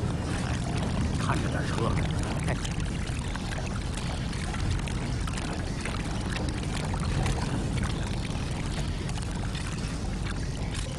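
Water sloshing and running in a flooded mine tunnel, with steps splashing through shallow water and small scattered knocks, over a steady low rumble.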